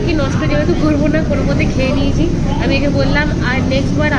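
A woman talking in Bengali over a steady low background rumble.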